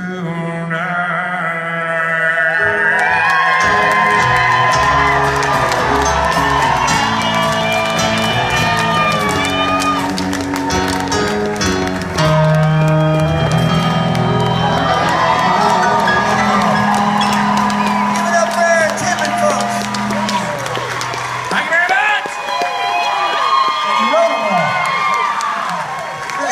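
Live country band on acoustic guitars and keyboard playing out the end of a song. The music stops a few seconds before the end, and the audience then cheers and whoops.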